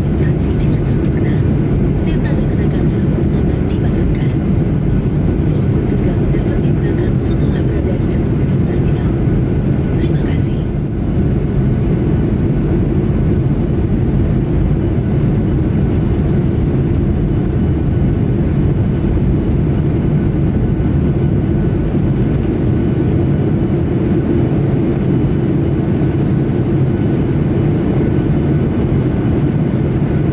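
Steady cabin rumble of a Boeing 737-800 on the ground after landing, its CFM56 engines running at low power as it taxis. A few faint clicks come in the first ten seconds or so.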